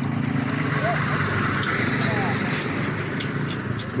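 A motor vehicle engine running steadily at low revs nearby, with faint voices in the background.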